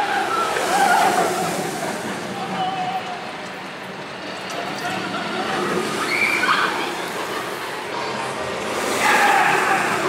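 Voices of people nearby over a broad outdoor rushing noise, which swells near the end as a Hollywood Rip Ride Rockit roller coaster train runs along the track.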